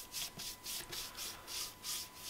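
Paintbrush stroking teak oil onto bare pallet-wood boards: faint quick scratchy swishes, about five strokes a second.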